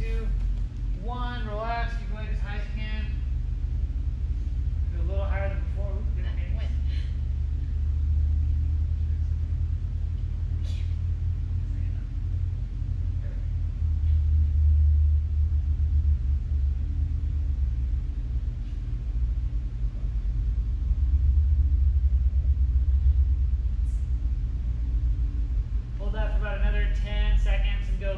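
A steady low rumble throughout, swelling slightly twice past the middle, with a few short stretches of soft speech near the start and near the end.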